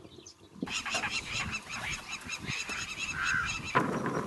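A flock of birds calling, with many short calls overlapping. The calling starts abruptly about half a second in and cuts off just before the end.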